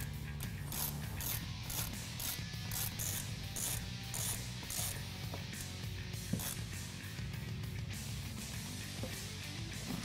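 Small hand ratchet with a hex bit clicking in short runs as it tightens button-head screws on a steel bracket, over steady background music.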